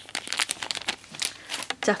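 Thin clear plastic bag crinkling as it is handled and set down, a quick irregular run of crackles with wine corks shifting inside.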